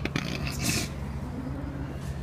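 Steady low hum, with a sharp click right at the start and a brief rustle about half a second in.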